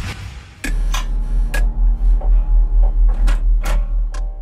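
Title-sequence sound design: a whoosh swelling in at the start, then a heavy, evenly pulsing deep bass rumble with a few sharp hits over it, as the show's logo card comes up.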